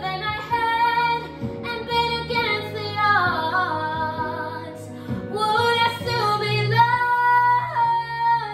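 A young girl's solo voice singing a slow ballad over a soft instrumental backing track. Near the middle there is a descending run with wavering pitch, and near the end she holds one long high note.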